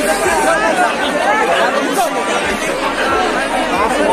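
Crowd chatter: many voices talking at once close around, a steady dense babble with no single voice standing out.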